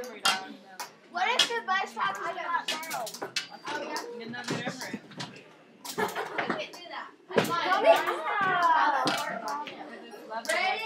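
Indistinct chatter and calls of girls' voices in a classroom, with a few sharp knocks among them.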